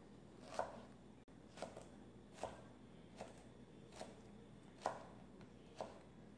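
A kitchen knife slicing a piece of fresh ginger on a cutting board: seven slow, evenly spaced strokes, each a sharp tap of the blade through the root onto the board, about one every 0.8 seconds.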